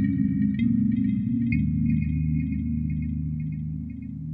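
Novation Peak/Summit synthesizer patch playing a sustained low chord with short, bell-like high notes repeating over it. The chord changes about a second and a half in, and the sound fades toward the end.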